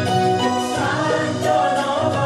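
University anthem sung by a choir over instrumental accompaniment, one steady passage of sung melody.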